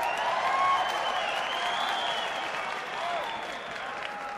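Concert audience applauding and cheering, loudest about a second in and then slowly dying down.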